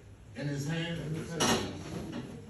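A voice speaking briefly and low, then a sharp clatter of something hard knocked or set down about a second and a half in.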